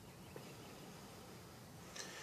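Near silence: a faint steady hiss, with one tiny click about a third of a second in.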